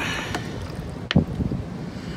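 A thin stream of water pouring from a plastic bottle's filter nozzle into an enamel camp mug, with wind on the microphone and a single sharp click about a second in. The flow is weak, "pouring slack": the filter must need cleaning out, by the pourer's reckoning.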